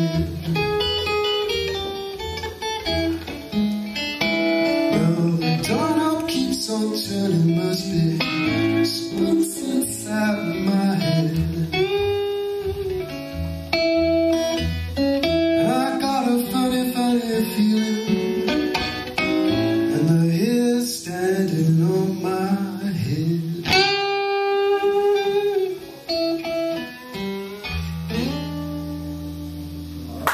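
Acoustic guitar playing a blues passage with single-note runs and chords, some notes bending in pitch. Near the end it settles on a final chord that is left ringing.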